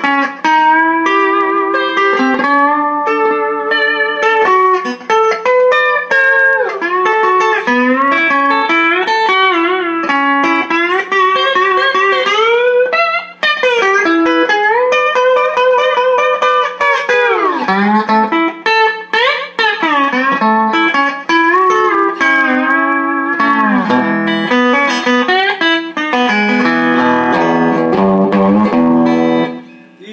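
Electric Rickenbacker lap steel guitar with a horseshoe pickup, played with a steel bar: picked notes and chords with gliding slides between pitches. A steady electrical hum sits underneath, which the owner puts down to a missing ground wire. Near the end come low notes on the bottom E string, which the owner finds too light, with a rubber-bandy, dead sound.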